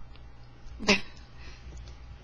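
A single short spoken "okay" a little under a second in, otherwise quiet room tone with a steady low hum.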